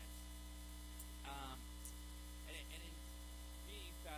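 Steady low electrical mains hum, with a few faint snatches of voice a little after a second in and twice more later.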